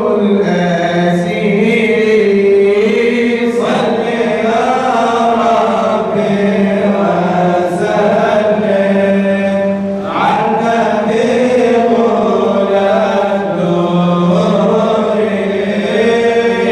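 Unaccompanied male chanting of Arabic madih, praise songs for the Prophet, sung into a microphone. It moves in long held notes that rise and fall, with fresh phrases beginning a little under four seconds in and again at about ten seconds.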